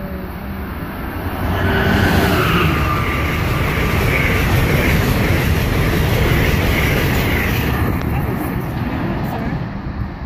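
Amtrak electric passenger train passing close at speed: the rushing rumble of wheels on rail swells about a second and a half in, stays loud while the cars go by, and eases slightly near the end.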